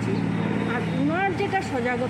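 Speech over the steady low hum of an idling engine.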